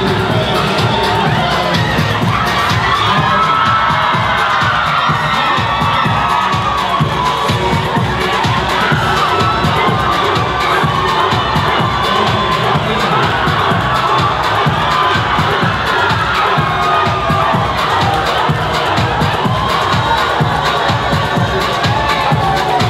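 A crowd cheering and shouting loudly, many voices at once, over music with a steady low beat.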